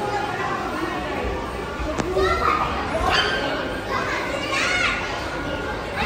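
Children playing and talking in a large indoor hall over general crowd chatter, with high-pitched children's calls about two to three seconds in and again near five seconds, and a sharp click at about two seconds.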